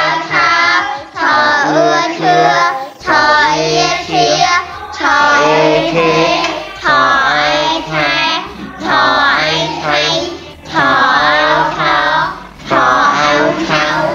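A child's voice singing in short, repeated sing-song phrases over backing music, with a steady low bass line coming in about three seconds in.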